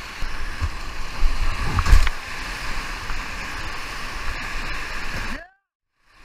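Whitewater rapid rushing around a kayak in high water, with splashes close by, loudest about two seconds in. The sound cuts off suddenly about half a second before the end.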